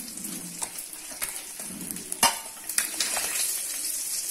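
Fish steaks sizzling in oil on a flat griddle pan, with a metal spatula scraping and clicking against the pan a few times; the sharpest click comes a little past halfway.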